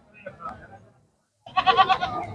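A goat bleating: one short wavering call in the last half second, after faint background murmur and a moment of silence.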